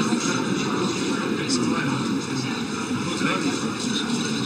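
Indistinct chatter of many overlapping voices over a steady background rumble, with a couple of brief clicks, one about a second and a half in and one near the end.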